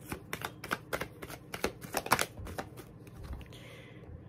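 A tarot deck being shuffled by hand: a quick, irregular run of card clicks and slaps that stops shortly before the end.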